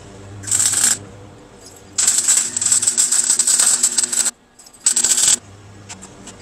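Electric arc welding on steel: three bursts of crackling arc, a brief one near the start, a longer one of about two seconds in the middle, and another brief one near the end.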